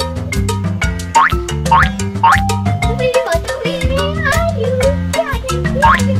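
Upbeat children's background music with a steady bass line and beat, and several quick rising glide effects like a boing or slide whistle.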